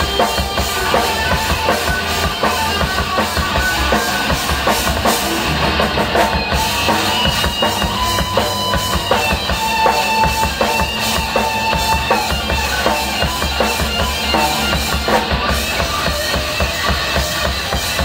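Live rock band playing an instrumental passage: an electric guitar lead over a drum kit and bass, with no singing.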